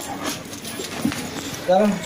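A person laughing briefly near the end, after a stretch of faint, scattered voice sounds.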